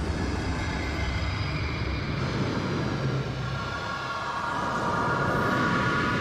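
Deep, steady rumbling drone of a studio logo's sound design. About halfway in, a chord of sustained high tones joins and builds.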